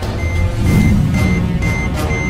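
Electronic countdown timer beeping steadily, a short high beep about twice a second, over a low droning music score.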